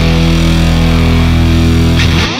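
Heavy rock music: one long chord held steady and ringing out.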